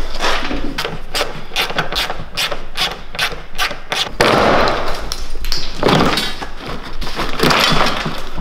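The side sill trim cover of a Mercedes W220 S-Class being pried and pulled off with a tool: a quick run of sharp cracks and snaps as its fastenings and brittle edges break loose, with a few longer scraping rasps.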